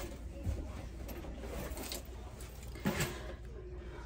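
Low steady room hum with a few faint knocks and rustles, and one slightly louder short sound about three seconds in.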